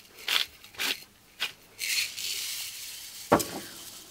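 Pepper being dispensed: a few short gritty crackling strokes about half a second apart, then a longer scraping sound and a single sharp knock a little before the end.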